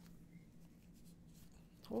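Faint rustling and rubbing of a shirt's fabric collar being handled close to the microphone, over a low steady room hum.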